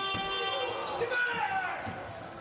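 Arena sound of a college basketball game in play: crowd noise with a ball bouncing on the hardwood and short high squeaks off the court.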